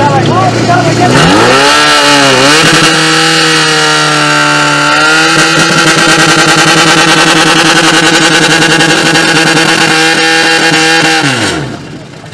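Portable fire pump's engine revving up to full throttle about a second in, dipping once, then running high and steady while it pumps water to the hose lines, and dropping away just before the end.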